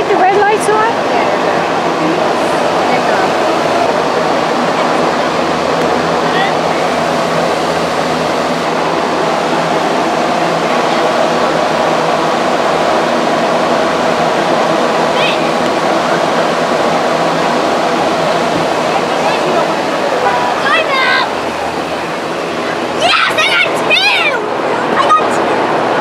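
Steady rushing background noise with indistinct voices over it. A few louder voices call out near the end.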